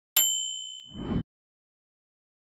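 Notification-bell chime sound effect: a bright ding that rings for about a second, with a low rushing swell rising beneath it near the end before both cut off suddenly.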